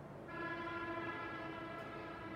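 A distant horn sounding one long, steady note, starting about a quarter second in.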